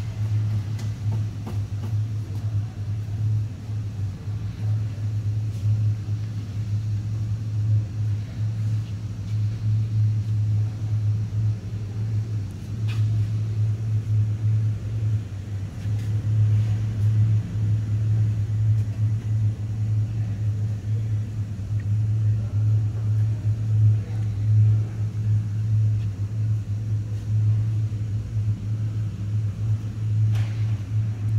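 A steady low rumble that runs unbroken and hardly changes, with a few faint clicks over it.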